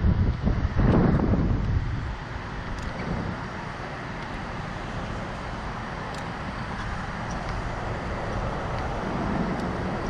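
Wind rushing over the onboard microphone of a Slingshot ride capsule as it swings and turns on its cords, loudest in the first two seconds, then a steady rush.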